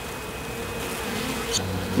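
Honeybees buzzing nearby: a steady hum of beating wings.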